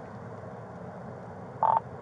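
Steady low hum inside a patrol car, then near the end a single short, loud beep from the police radio just before a radio call comes through.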